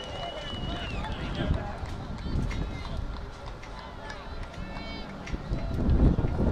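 A referee's whistle blown as one steady, high, shrill tone that cuts off about a second in, followed by voices calling out across the football field.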